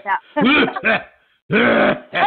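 A woman coughing: two short voiced coughs in the first second, a brief pause, then a longer, harsher cough about a second and a half in. It is a lingering cough that she says she cannot get rid of, though she is not sick.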